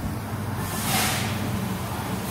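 Tire-shop service bay: a steady low machine hum with one short hiss of compressed air about half a second in.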